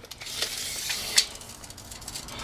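Steel tape measure blade being pulled out, a light rasping hiss with a sharp click a little after a second in.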